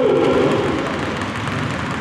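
Several basketballs being dribbled at once on a hardwood gym floor: a steady, overlapping clatter of bounces, some players working two balls at a time.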